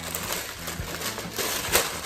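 Thin plastic bag rustling and crinkling as it is pulled open by hand, with a louder crackle near the end.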